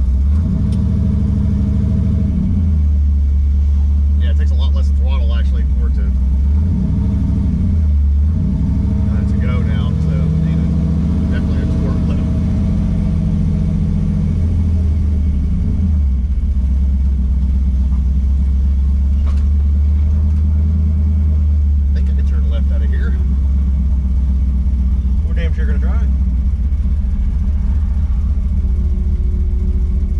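Cammed 5.3 L LS V8 with a BTR Stage 4 truck cam, heard from inside the cab while the truck drives. Its deep drone steps up and down in pitch several times as the revs change.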